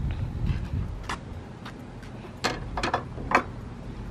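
A wooden fence gate's black metal latch clicking and rattling in a quick cluster of sharp clicks as the gate is opened. Low thumps of handling and steps come in the first second.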